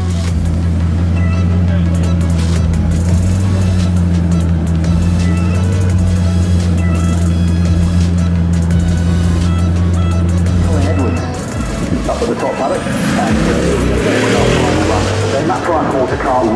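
Bugatti Chiron's quad-turbocharged W16 engine running at low speed with a steady low drone, over crowd chatter and background music. From about twelve seconds in the drone stops and a rougher, noisier engine sound takes over.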